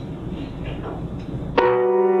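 Grand piano: after a short stretch of quiet room noise, a chord is struck about one and a half seconds in and left ringing.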